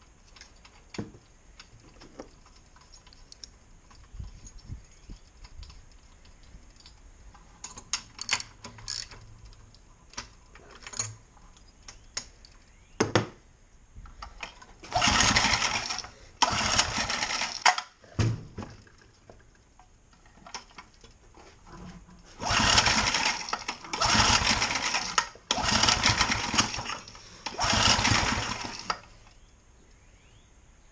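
Small Briggs & Stratton four-stroke horizontal-shaft engine being cranked with its pull-start: six pulls of about a second each, two around the middle and four close together near the end. Each pull is a short whirring crank with no steady running after it. The engine is being tried on a squirt of spray in the intake after sitting for years with suspected stuck rings.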